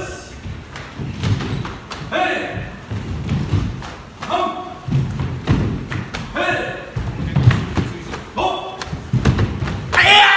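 Karate drill of front kicks and lunge punches: a short shouted call comes about every two seconds, each followed by heavy thuds of bare feet stamping and landing on a wooden dojo floor. A loud shout closes the sequence near the end.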